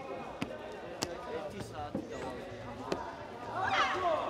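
Sharp knocks of fighters' bare feet stamping and bouncing on foam competition mats, a few separate hits, against voices echoing in a large sports hall; a loud voice rises near the end.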